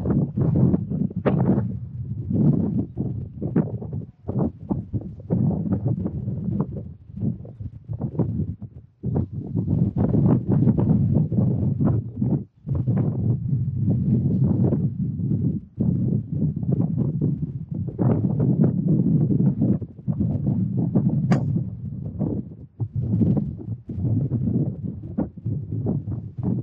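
Wind buffeting the camera microphone in uneven gusts. A single sharp click about three-quarters of the way through is a golf club striking the ball on a tee shot.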